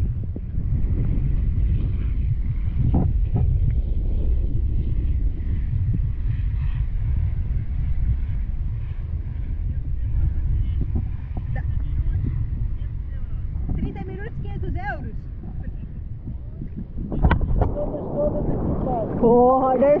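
Steady low rumble of sea water and wind buffeting an action camera held at the water's surface, with a sharp knock a few seconds before the end and a short spoken exclamation just before the end.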